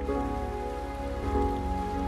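Rain pattering on a water surface, a steady hiss, over a soft film score of sustained notes.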